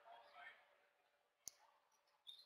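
Near silence broken by a single sharp click about one and a half seconds in, a computer mouse button being clicked.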